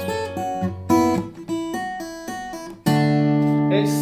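Takamine acoustic guitar played fingerstyle: a quick run of single plucked notes, then a chord struck a little before three seconds in and left ringing.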